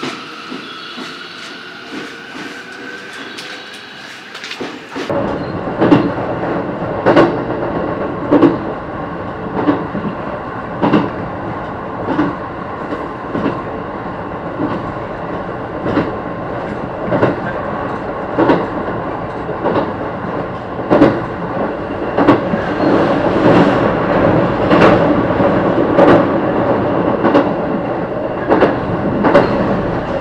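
An electric train pulls past with a faint motor whine that rises slowly in pitch as it speeds up. About five seconds in, this gives way to a loud rolling rumble from a train in motion, with wheels clacking over rail joints about once every 1.2 seconds.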